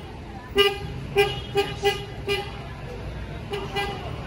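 A vehicle horn tooting in short, quick taps of one steady pitch, about seven in an irregular rhythm, over a low steady engine rumble that comes in about a second in.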